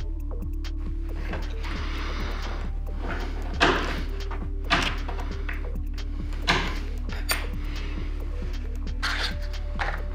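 Background music with a few sharp clicks and knocks from a hobby blade cutting one side off a small plastic servo arm on a wooden tabletop, the clearest about a third, halfway and two-thirds of the way through.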